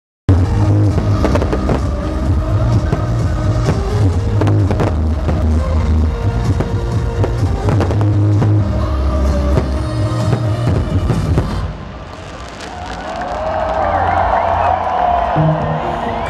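Loud electronic dance music with heavy bass over a festival sound system, with sharp firework bangs cracking through it. About twelve seconds in, the music cuts out and a large crowd cheers and shouts, growing louder.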